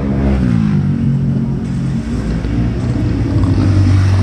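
A motor vehicle engine running steadily, its pitch dropping during the first second and then holding, a little louder near the end.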